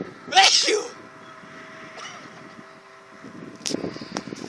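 A person's short, loud vocal burst about half a second in, then a faint, steady, two-toned whine from the distant electric RC model plane's motor, which fades out a little after three seconds.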